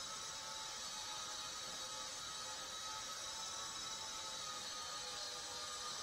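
Micro RC airplane's 4 mm coreless motor and propeller running in flight: a faint, steady high whine made of several tones over a light hiss, the throttle held constant.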